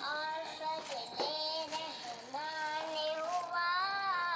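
A song with a high-pitched singing voice holding and bending drawn-out notes.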